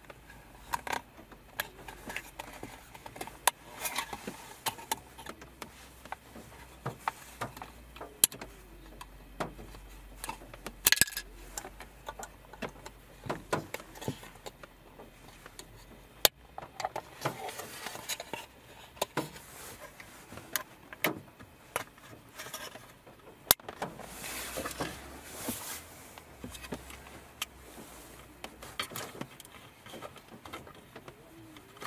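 Small sharp plastic clicks, taps and scrapes at irregular intervals as a screwdriver pries red plastic retainer clips out of a hard plastic windshield-cover housing. Hands handle the plastic parts, with a stretch of soft rustling near the end.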